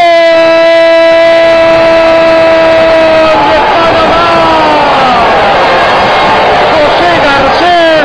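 A man's voice holding one long, level shout for about three seconds as a goal goes in, then breaking into excited, wavering shouts over steady background noise.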